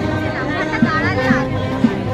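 March music with a steady beat about two a second, over the chatter of a crowd.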